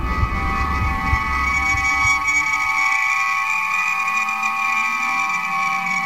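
Star Trek-style transporter beam sound effect: a steady chord of several high tones, with a low rumble under it that stops about halfway through.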